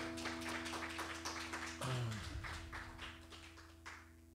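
The final chord of an acoustic guitar rings on and slowly fades, while a small audience claps.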